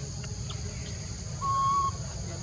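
A single short, flat, whistle-like animal call about half a second long, starting about a second and a half in, over a steady high drone of insects.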